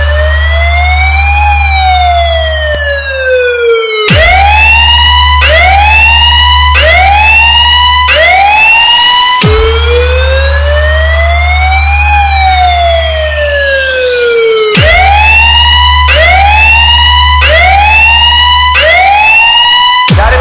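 Police siren sound in a DJ dance track, switching between a slow wail that rises and falls over about four seconds and a fast yelp of rising swoops, roughly one a second. This happens twice, over a steady deep bass drone.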